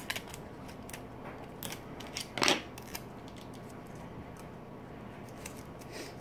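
Catalog paper and clear tape being handled while a small packet is wrapped: scattered small clicks and rustles, with one louder short tear of tape about two and a half seconds in.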